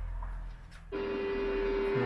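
A sports motorcycle engine held at high revs at full throttle in onboard track footage played back on a TV. It comes in about a second in as a steady high engine note.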